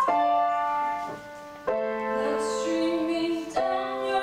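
Female voice singing a slow song with piano accompaniment; the piano chords change twice, about one and a half seconds in and again near the end.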